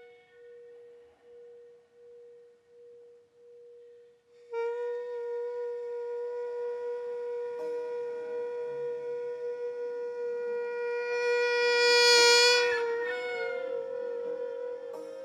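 A short Korean bamboo wind pipe plays a slow solo line. A soft, pulsing held note comes first; about four and a half seconds in, a much louder, bright held note enters. It swells to its loudest shortly before the end, then steps up to a higher pitch.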